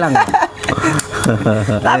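Men speaking in casual conversation; no other sound stands out.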